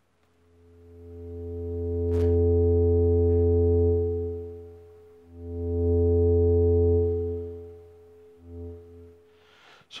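Moog Werkstatt synthesizer holding one steady low note whose volume swells in and fades out smoothly, twice fully and once more faintly near the end, as a hand over the Koma Kommander's range sensors drives the VCA with control voltage rather than an on-off gate. A single click comes about two seconds in.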